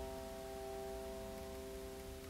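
Grand piano holding a soft chord of several notes that slowly fades away.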